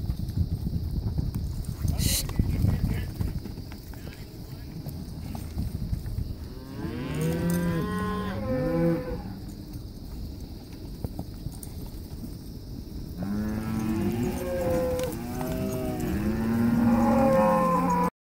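Cattle mooing in two stretches of calls, a short burst about seven seconds in and a longer run of several calls from about thirteen seconds on.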